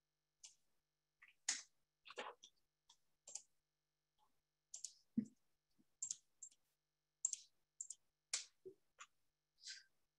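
Faint, irregular clicking of a computer keyboard and mouse, about twenty separate clicks with short silences between.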